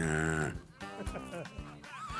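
A man's exaggerated mock sobbing: a loud drawn-out wailing cry in the first half second, then quieter broken whimpers, over background music.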